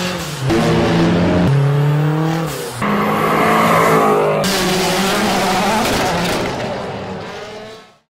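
Car engines accelerating hard in a run of short clips, the engine pitch rising and changing at each cut, then a rushing pass that fades out near the end.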